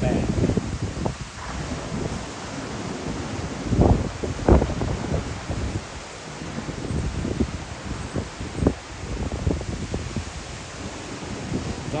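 Gusty thunderstorm wind buffeting the microphone: a steady rushing hiss with low rumbling surges, the strongest about four and four and a half seconds in and another near nine seconds.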